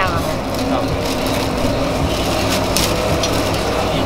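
Thin plastic bag crinkling as gloved hands work raw pork ribs inside it, with a few sharp crackles about two and a half seconds in, over a steady low background rumble.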